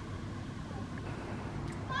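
Steady faint outdoor background noise, with a short high-pitched call near the end.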